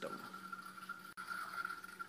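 Faint steady hum with a thin high whine above it, briefly dropping out just over a second in.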